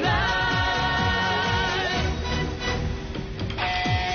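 Chinese pop song with a singer holding a long note with vibrato over a steady kick-drum beat. A new held note comes in near the end.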